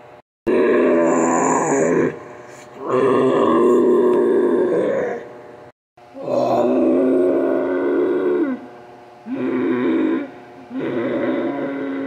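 A person's voice making grunting, groaning ape noises for a toy gorilla: five drawn-out calls of one to two seconds each, with short pauses between.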